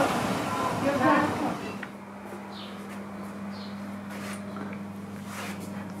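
A steady wash of outdoor noise with indistinct voices, which stops about two seconds in. A quieter indoor stretch follows, holding a steady low hum and a few faint clicks.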